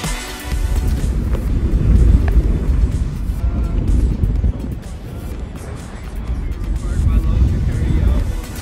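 Wind buffeting the microphone, heard as a loud, uneven low rumble that rises and falls, with background music faintly underneath.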